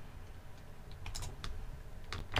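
A few computer keyboard keystrokes in quick succession about a second in, over a low steady hum.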